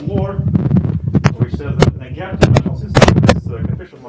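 A man's voice overlaid by a rapid, irregular run of sharp knocks and clicks with low thumps, the loudest cluster about three seconds in.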